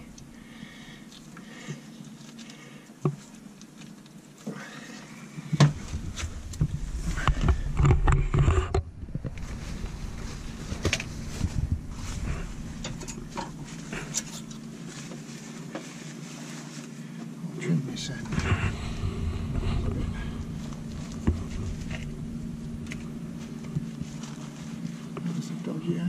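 Clicks, knocks and rustling of gloved hands handling and trimming greasy stern-gland packing rope, with louder spells of handling noise and a steady low hum underneath.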